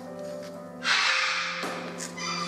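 A blue-and-yellow macaw gives one harsh, loud squawk about a second in, lasting well under a second, over steady background music.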